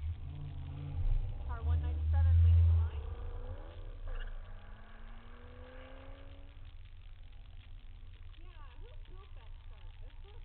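A Corvette's V8 launching hard off the start line: a loud low rumble that peaks about two and a half seconds in, then a rising engine note that fades as the car accelerates away. The waiting car's engine idles steadily underneath.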